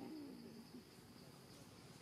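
Faint forest ambience: a steady high insect buzz, with one low hooting call at the start that falls in pitch and lasts under a second.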